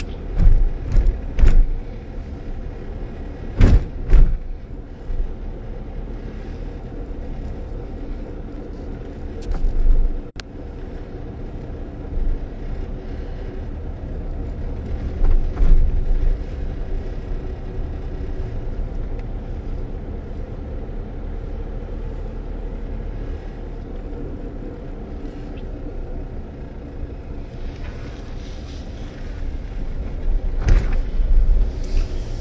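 A car's engine running and its tyres on the road, heard from inside the cabin while driving: a steady low hum. It is broken by a few loud low thumps, mostly in the first few seconds.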